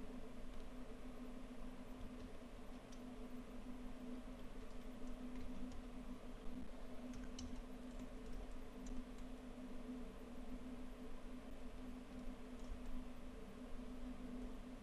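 A handful of faint, scattered clicks from computer input controls while a 3D model is being worked on screen, over a steady low electrical hum.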